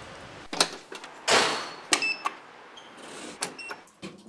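Push buttons being pressed: sharp clicks, each with a short high electronic beep, about two seconds in and again near the end. About a second in there is a louder rushing whoosh.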